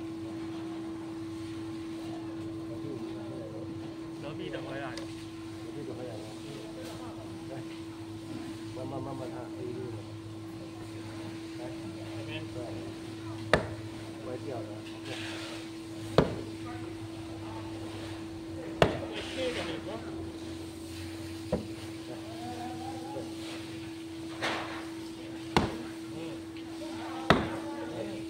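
A wooden mallet striking the back of a long knife driven into a giant grouper's head, splitting it. About seven sharp knocks come from about halfway through, spaced one to three seconds apart.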